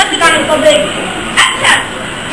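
A girl's high-pitched voice speaking or calling out lines in short loud bursts.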